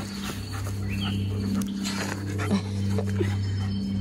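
Eight-month-old German Shepherd making small noises as she plays, over a steady low hum. A brief high rising whine comes about a second in.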